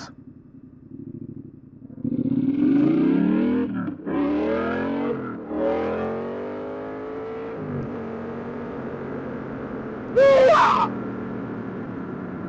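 Yamaha MT-07 parallel-twin engine pulling away: the revs climb three times, with a short drop between each as it shifts up through the gears, then it settles to a steady cruise. A short, loud, voice-like sound cuts in near the end.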